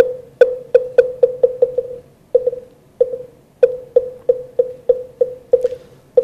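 Moktak (Korean Buddhist wooden fish) struck in runs that speed up. Each stroke is a sharp wooden knock with a short ringing tone. A first run dies away about two seconds in, a couple of slower strokes follow, and a second quickening run starts about three and a half seconds in, leading into the chanting of a mantra.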